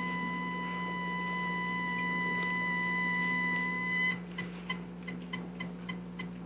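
A steady high electronic beep tone, held on one pitch, cuts off suddenly about four seconds in. A run of faint clicks follows, about four or five a second.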